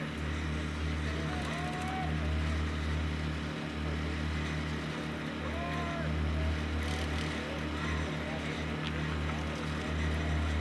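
A steady low rumble runs throughout, with a few brief dips, and faint distant voices call out now and then over it.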